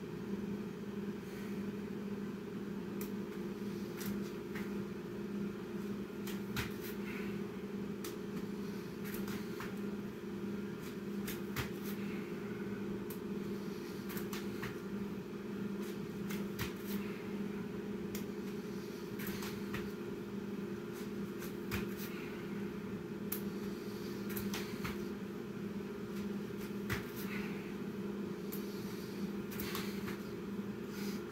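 Burpees on an exercise mat: irregular soft knocks of hands and feet landing every second or two, with occasional breaths through the nose. Under them runs a steady low two-pitch machine hum.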